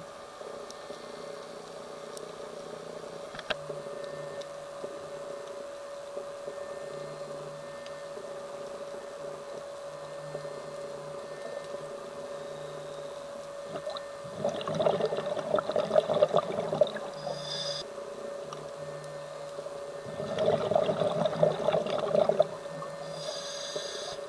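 Scuba diver's exhaled bubbles from the regulator, heard underwater through the camera housing: two bubbling bursts of about two seconds each in the second half, over a steady hum.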